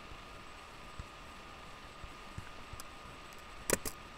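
Steady background hiss with a faint thin whine, a few soft thumps, and two sharp clicks in quick succession near the end.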